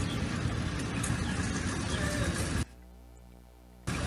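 Outdoor street noise on the sound track of phone-shot arrest footage: a dense hiss with a heavy rumble, like traffic or wind on the microphone. It cuts off suddenly about two and a half seconds in, leaving a faint hum, and comes back briefly near the end as the clip is replayed.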